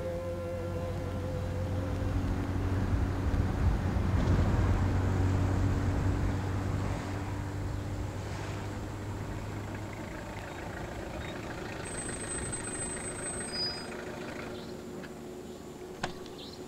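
Car driving past: engine and road rumble swell to a peak about four seconds in, then fade slowly.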